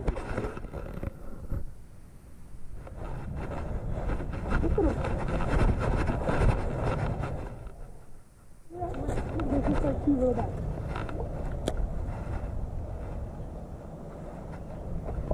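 Wind rumbling on an outdoor camera microphone, mixed with handling and walking noise, with a short dip about eight seconds in. Faint, indistinct voices come through about nine to eleven seconds in.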